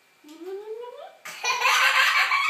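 A short rising vocal sound, then loud laughter breaks out a little over a second in.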